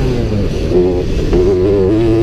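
Motocross bike engine running hard close to the camera, its revs rising and dropping several times as the rider works the throttle.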